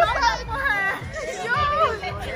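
Animated, high-pitched talk and laughter from a small group at a table, over background music with a bass line.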